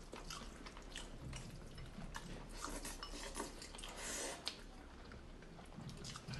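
Faint eating sounds: chopsticks clicking against a glass bowl as noodles are picked up, with a short slurp of noodles about four seconds in.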